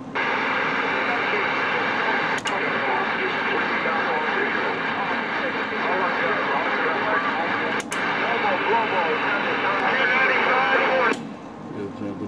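CB radio receiving an unintelligible transmission on channel 19: a garbled voice buried in loud static and hiss. It opens suddenly, carries two short clicks, and cuts off abruptly about eleven seconds in as the signal unkeys.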